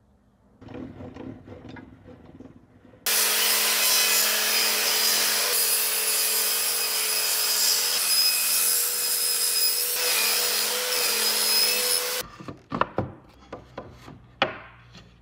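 Table saw running and cutting a wide wooden panel for about nine seconds, a steady loud noise with a constant hum, that stops abruptly. Quieter handling rustle comes before it, and a series of sharp wooden knocks and clacks follows near the end.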